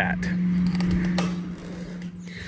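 An aluminium-framed glass storm door being unlatched and pulled open, with faint clicks and a short rush of noise that fades after about a second and a half, over a steady low hum.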